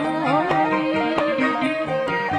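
Khmer traditional wedding music (pleng kar) played live by an ensemble: a melody with sliding notes over a regular drum beat.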